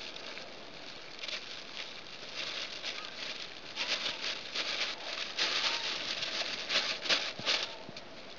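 Clear plastic bag crinkling and rustling under a hand as the rope tied round its neck is worked loose, in quick irregular rustles that grow busier about halfway through.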